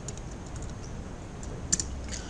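Typing on a computer keyboard: a run of light keystrokes, with a quick cluster of sharper key clicks near the end.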